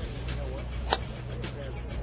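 A TaylorMade R9 SuperTri driver striking a golf ball: a single sharp crack about a second in, over steady background music.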